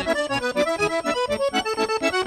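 Accordion playing a lively Portuguese popular dance tune: a quick run of melody notes over an even bass pulse.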